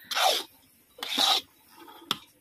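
Metal spatula scraping through a thick prasad mixture against the bottom of an iron kadai, as the mixture is stirred. Two rasping strokes, each about half a second long and about a second apart.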